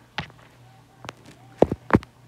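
Fingertips tapping on an iPad touchscreen: four short, sharp taps spread over two seconds, the last two close together near the end.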